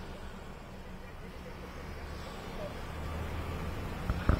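Faint outdoor street ambience: a low, steady traffic rumble that grows slightly louder, picked up by an open field microphone.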